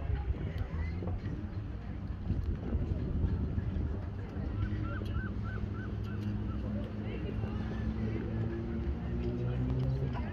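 Brass band playing a traditional European march, its low brass holding steady chords that shift pitch now and then.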